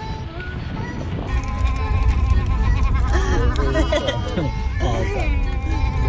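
Background music with a wavering sung voice coming in about a second and a half in, over a low steady rumble.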